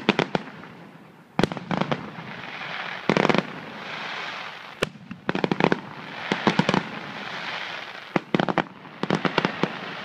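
Aerial fireworks shells bursting, with sharp bangs a second or two apart and, later, rapid clusters of crackling pops.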